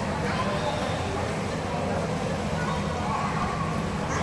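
Indoor swimming pool ambience: indistinct voices of swimmers and instructors over a steady low hum.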